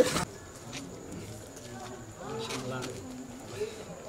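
A man's voice speaking faintly and low in a lull in the talk, after louder speech cuts off at the very start.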